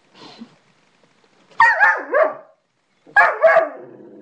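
A dog barking: two loud double barks, the first pair about a second and a half in and the second pair about three seconds in.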